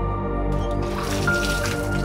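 Background music with held tones, over which, from about half a second in, water splashes and drips as a person washes their face under a tap.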